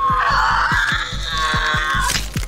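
A woman screaming in pain over dramatic score music with a fast low pulse of about four beats a second.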